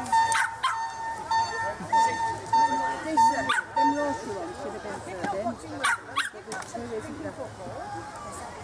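Dogs barking in short single and double barks, about five in all, over crowd chatter. A steady high tone pulses in short repeated beeps until about three seconds in.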